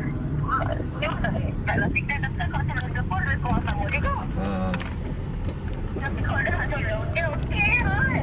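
Talking voices over the steady low rumble of engine and road noise inside a moving car's cabin.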